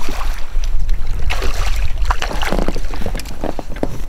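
A hooked smallmouth bass splashing and thrashing at the water's surface, in short irregular splashes over a steady low rumble of wind on the microphone.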